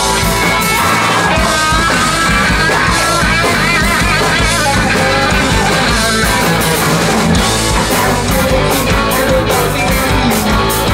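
Garage-rock band playing live and loud: electric guitars and drum kit, with a singer's voice over them.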